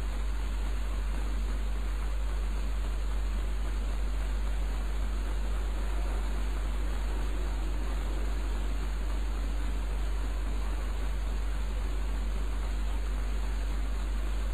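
Steady hiss of the recording's background noise with a constant low hum underneath, unchanging throughout.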